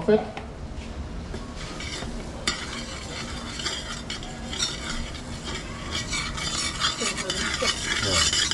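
Butter sizzling as it melts in the bottom of a hot pot, pushed around with a metal spoon that clinks and scrapes against the metal. The sizzle starts up suddenly about two and a half seconds in and keeps going.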